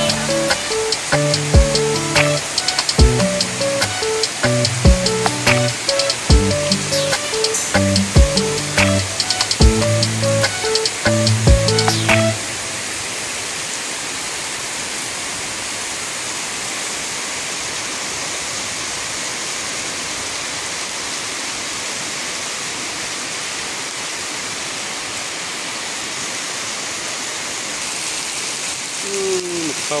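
Electronic music with a steady beat that cuts off suddenly about twelve seconds in, leaving the steady hiss of heavy rain.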